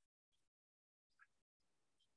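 Near silence, broken by a few faint, brief blips of background noise.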